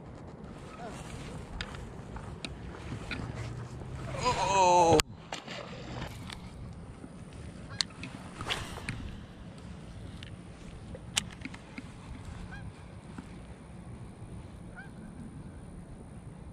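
A goose honks once, a drawn-out wavering call that swells for about a second and is cut off sharply about five seconds in. After that there is only faint outdoor background with a few light clicks.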